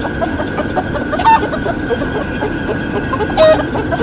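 Chicken-like clucking: a run of short clucks with two louder squawks, about a second in and again near the end, over car cabin road noise.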